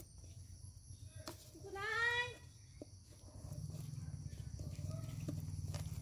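Cutting pliers snipping a plastic bottle, heard as a few sharp clicks. The loudest sound is a short call rising in pitch, about two seconds in. Under it runs a low steady hum that grows louder after about three and a half seconds.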